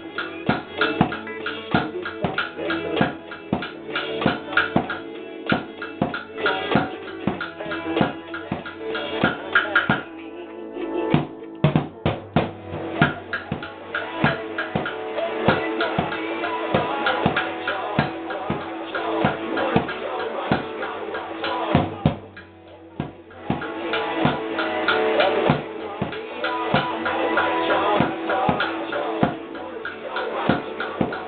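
Drums struck with sticks in a steady rhythm, played along to a recorded song with guitar. The backing thins out briefly about a third of the way through and again about three quarters through.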